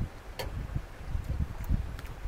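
A man chewing a mouthful of food, with low irregular thuds, and a single sharp click about half a second in from a metal spoon against a metal mess tin.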